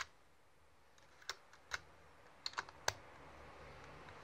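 Sharp plastic and metal clicks from handling a Sony Walkman WM-EX2HG cassette player as its lid is pressed shut over a cassette and its controls are worked: single clicks about half a second apart, then three close together near the end, followed by a faint steady hiss.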